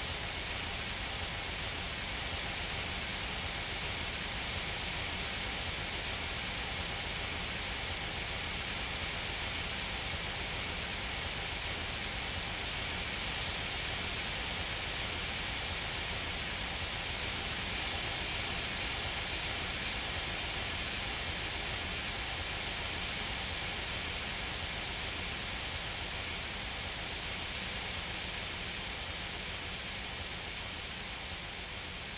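A steady, even wash of hiss-like noise with faint held tones underneath, unchanging throughout: a noise passage in a screamo/post-rock album recording.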